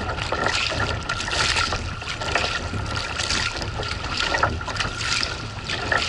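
Choppy water splashing and slapping against a kayak's hull close to the microphone, with a fresh splash about once a second as the paddle strokes and waves hit. Wind rumbles on the microphone underneath.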